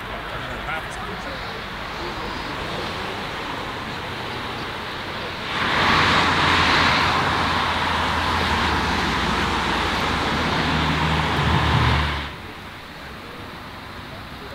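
Ferrari sports car engine running close by for about seven seconds, its pitch rising slightly near the end before it cuts off abruptly, over people chatting.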